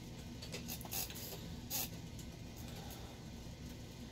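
Small hand screwdriver working the bolt of a metal servo horn on an RC crawler: a few faint clicks and scrapes of tool on metal, about half a second, a second and nearly two seconds in, over a steady low hum.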